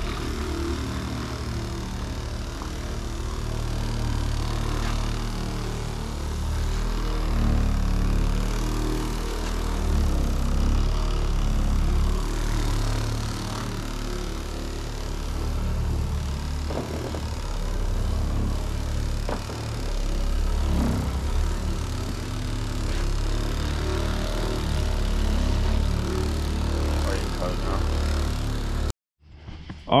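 Dual-action car polisher with a foam pad running steadily over painted body panels while cutting compound, with music playing in the background.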